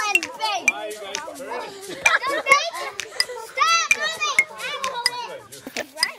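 Several young children talking and calling out over one another, their high-pitched voices overlapping, with louder calls about two and four seconds in.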